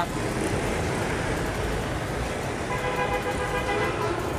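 Steady road traffic noise from a nearby street, with a vehicle horn sounding one steady held note for over a second near the end.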